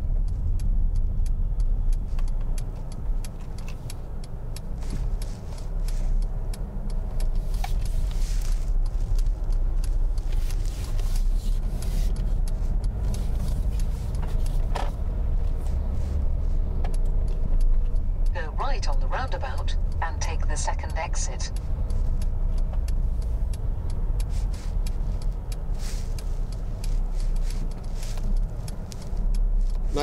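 Steady low rumble of a car's engine and tyres heard from inside the cabin while driving on a wet road, with a few faint scattered clicks and rattles.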